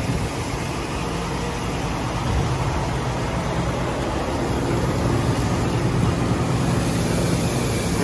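Steady low hum and rushing noise of seed-treating and conveying machinery running while treated wheat seed pours from the spout into a hopper-bottom grain trailer.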